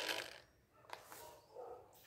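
Mostly quiet, with two faint short clicks about a second in.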